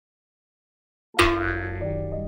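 Silence for about the first second, then background music starts abruptly on a keyboard chord with a low bass note, its upper notes changing shortly after.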